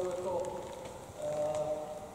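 Indistinct talking, in two short stretches: one near the start and another a little after a second in.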